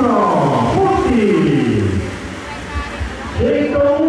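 A race announcer's voice drawing out long calls that slide steeply down in pitch over the first two seconds. After a quieter moment, ordinary talk resumes near the end.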